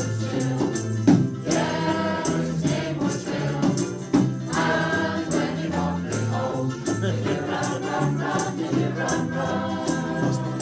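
A choir of women singing together from song sheets, with held low accompanying notes beneath the voices.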